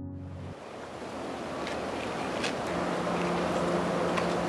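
Soft background music stops about half a second in and gives way to a steady hiss of outdoor background noise that grows slightly louder. A low steady hum joins from about three seconds in, with a few faint clicks.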